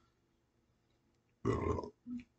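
Near silence, then about one and a half seconds in a single short vocal sound from a man, lasting about half a second.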